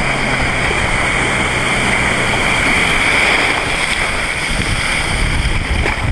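Jet ski running at speed over choppy water: a steady rush of water and spray with heavy wind noise on the microphone, and a faint engine drone under it in the first couple of seconds.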